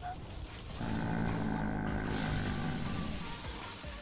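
Anime episode soundtrack: dramatic music with a long, held roar-like sound that starts about a second in and fades near the end.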